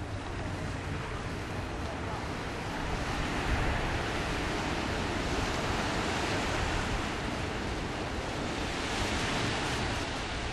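Small waves washing onto a sandy beach, a steady surf hiss that grows fuller about three seconds in, with wind buffeting the microphone.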